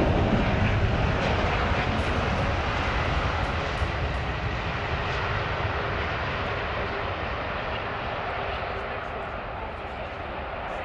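Jet engine noise from a British Airways Airbus A380-800's four Rolls-Royce Trent 900 turbofans as the airliner moves past on the ground. The rushing noise fades steadily as the aircraft draws away.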